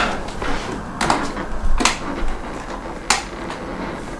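A few short, light knocks and clicks, three of them, with some rustling, from someone moving about a room and handling things, over a low steady hum.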